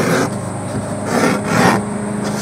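A metal hand tool scraping along the edge of a 3 mm leather belt strap lying on plywood, in several rubbing strokes that swell and fade.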